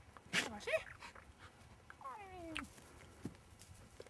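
English setter giving one long falling whine about two seconds in, excited as it is teased with a dead game bird.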